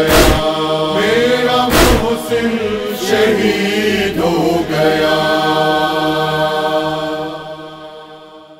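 Male voices chanting the closing refrain of an Urdu noha, a lament, with deep thumps about every second and a half. Near the middle they settle on one long held note, which fades out toward the end.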